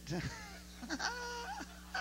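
A woman laughing into a handheld microphone. There are gliding, high-pitched voiced notes, and a held note about a second in, over a steady low electrical hum.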